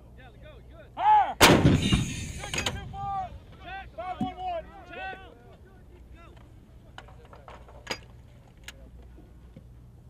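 M119 105 mm towed howitzer firing a single round about a second and a half in: one sharp blast followed by about a second of rolling rumble. A few light clicks follow later.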